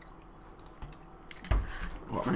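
Typing on a computer keyboard: scattered light key clicks, then a loud thump about one and a half seconds in.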